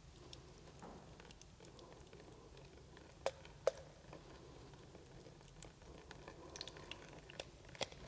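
Watery paper pulp being poured from a plastic jug into a mould in a metal sieve over water: faint pouring and pattering with small ticks, and two sharp clicks a little over three seconds in.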